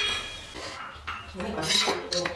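Wooden strips and a steel try square clinking and knocking on a marble floor as the pieces are handled and set in place, with a louder clatter near the end.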